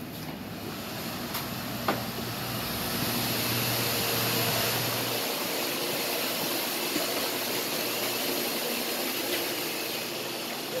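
Steady hiss and low hum of factory ventilation and machinery, growing louder a couple of seconds in and then holding, with a single sharp click about two seconds in.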